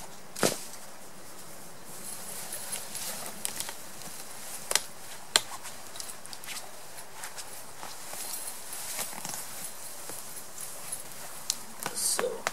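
Nylon hammock fabric and mosquito netting rustling as a person climbs in and settles into the hammock, with a few sharp clicks and knocks, the loudest about half a second in and two more around five seconds in.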